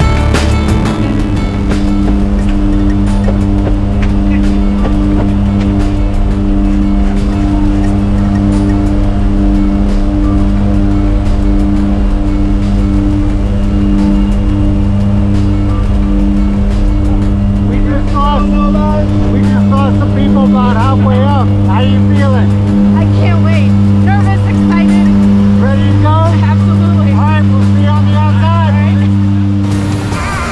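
Background music: a loud sustained low droning note with a steady beat underneath, joined about eighteen seconds in by a singing voice.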